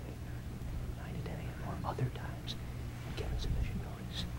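Faint whispering: a man speaking under his breath into another man's ear, picked up at a distance by table microphones, with soft hissing consonants. A steady low electrical hum runs underneath.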